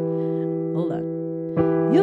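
Piano holding an E minor chord, its notes ringing on, and the chord is struck again about three quarters of the way through. A voice sounds briefly in the middle and slides upward into singing near the end.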